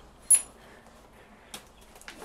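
A single short, high metallic clink about a third of a second in, followed by a faint tick a little after a second, over quiet room tone.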